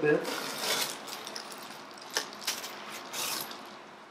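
Foil bubble-insulation liner crinkling and rustling as it is pulled out of a styrofoam shipping box. It comes in a few bursts, with sharp crackles about two seconds in.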